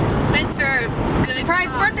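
A woman talking over the steady road and engine noise of a moving car, heard from inside the cabin.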